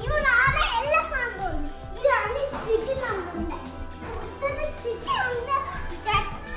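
A small child's high-pitched voice calling out and vocalizing again and again over music with sustained tones.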